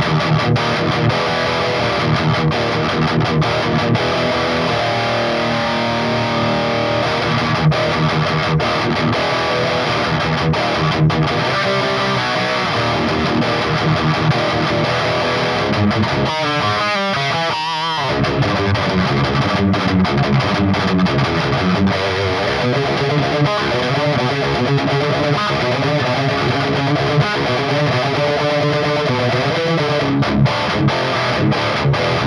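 Electric guitar riffing through a Finch Electronics Scream, a Tube Screamer-style overdrive pedal, giving a thick, distorted tone. The pedal is set to its silicon clipping mode, with a short break in the playing about halfway through.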